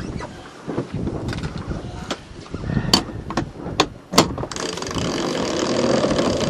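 Sailboat's sheet winch being worked to trim the sail: a few sharp clicks around the middle, then a steady rushing noise through the last second and a half.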